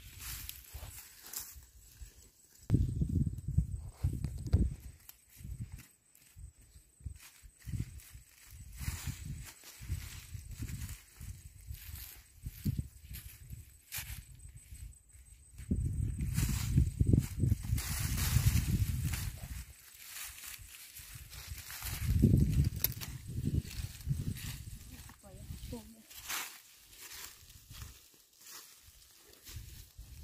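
A hand tool digging and scraping in soil among leafy vines, with scattered clicks and rustles. Several loud low rumbles come and go: about three seconds in, for a few seconds from around sixteen seconds, and again briefly near twenty-two seconds.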